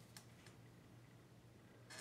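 Near silence: room tone with a faint steady hum and a soft tick near the start and another near the end.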